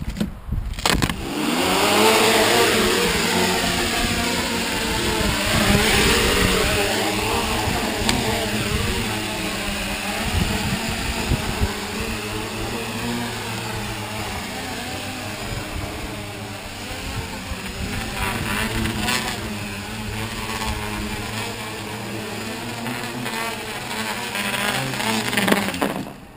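Electric quadcopter's four motors and propellers, ducted inside a foam shroud, spinning up about a second in and running steadily, the pitch constantly wavering up and down as the gyros correct. With the gyro sensitivity at 100 percent they are overcompensating for everything. The motors cut off suddenly at the end.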